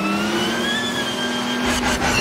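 Speeder bike engine sound effect: a steady pitched hum that rises slightly over the first second, with a deep rumble joining in near the end.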